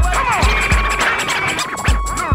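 Hip hop beat with turntable scratching: records scratched back and forth in quick pitch swoops over deep, booming bass-drum hits.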